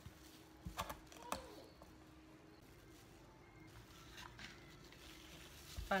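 Quiet kitchen handling on a wooden cutting board: a few soft knocks and taps about a second in as cut cantaloupe is moved, then a sharper knock near the end as a whole cantaloupe is set on the board. A faint steady hum runs underneath.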